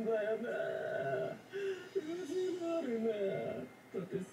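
Anime dialogue played back: one voice speaking Japanese in a drawn-out, wavering, half-sung delivery, with short pauses about one and a half seconds and three and a half seconds in.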